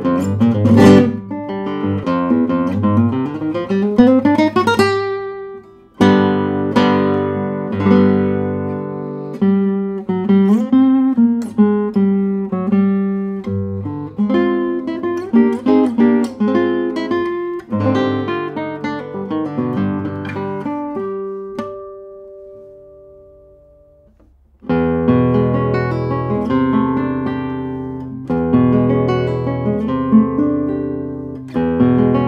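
A 1967 José Ramírez III 1A classical guitar, built by Mariano Tezanos and strung with Knobloch carbon trebles, played solo fingerstyle: plucked melody over bass notes, with a fast rising run in the first few seconds. About three-quarters through, a long note dies away almost to silence before fuller chords start again.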